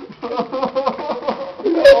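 Men's voices crying emotionally in an embrace: short, wavering sobbing and whimpering cries, breaking into a loud, drawn-out wail near the end.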